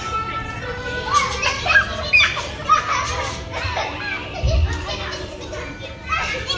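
Young children squealing and calling out as they play, with a low thump about four and a half seconds in.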